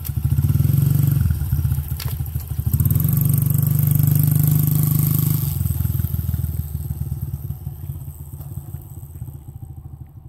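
Honda 50cc dirt bike's small four-stroke single-cylinder engine running as it is ridden off, throttled up twice in the first half and then fading steadily as the bike moves away.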